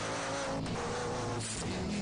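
Live gospel worship music: a man singing into a microphone over the accompaniment, with long held notes that waver slightly in pitch.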